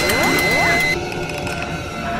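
Synthetic intro-animation sound effects: several overlapping rising sweeps in pitch and a held high tone over mechanical clicking, all cutting off suddenly about a second in, leaving a quieter background.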